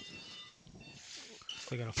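Faint room tone in a pause, with a few faint high steady tones early on. A man's voice starts near the end.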